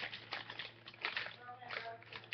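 Small plastic clicks and crinkles of a freshly opened Happy Meal toy and its plastic packaging being handled, with a brief murmur of a child's voice in the second half.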